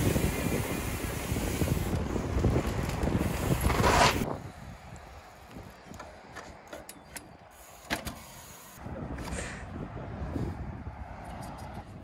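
Wind rushing over the microphone and tyre rumble from a bicycle riding along a tarmac street, cutting off about four seconds in. After that it is much quieter, with scattered clicks and one sharper knock from a trials bike balanced and hopped along a stone wall.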